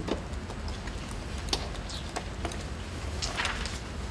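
Papers being handled on a table, with a few scattered light clicks and knocks and a longer paper rustle about three and a half seconds in, over a steady low room hum.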